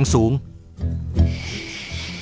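Night-time insect chorus, crickets keeping up a steady high trill that comes in about a second in.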